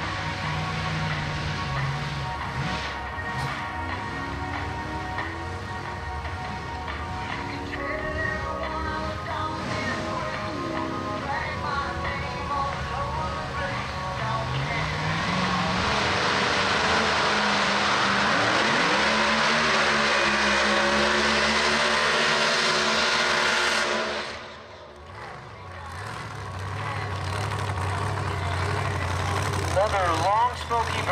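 The 1959 Cadillac Coupe de Ville drag car's engine idles and revs, then runs hard for several seconds with heavy tyre noise in the water box during its burnout. The sound cuts off suddenly near the end, and the engine is then heard idling and blipping again.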